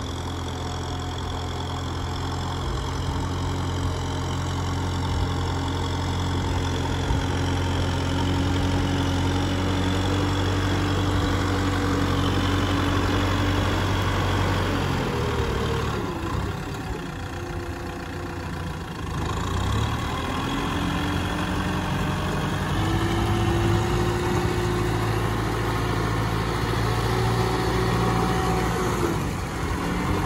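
Kubota M6040SU tractor's diesel engine running steadily under load as it drags a disc plough through wet paddy mud. Around the middle the engine note dips and shifts pitch for a few seconds, then settles again.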